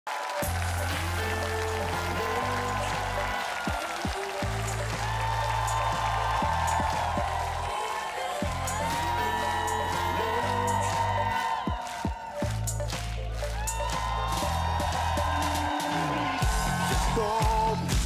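Live band playing the instrumental intro of a pop song: held synth chords over long bass notes that change every second or two, before the vocals come in.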